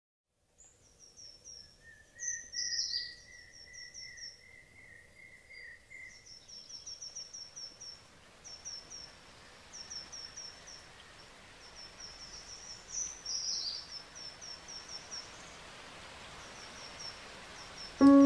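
Forest birds calling over a faint steady hiss: quick runs of short, high chirps repeat throughout, with a lower trill about two to six seconds in and a falling call twice.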